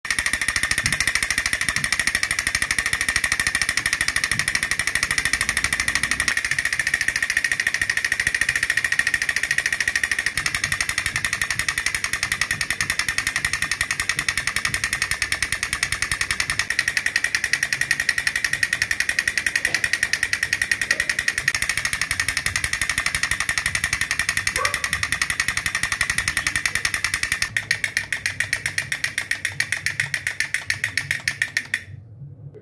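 Battery-operated toy drummer doll beating its plastic toy drum, a fast continuous rattling clatter. About three seconds before the end the beat slows into distinct separate taps.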